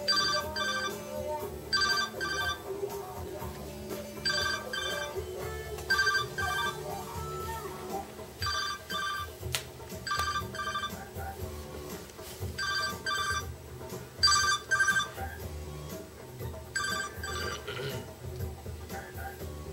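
A mobile phone ringing: an electronic ringtone of short double beeps, repeating about every two seconds, nine times.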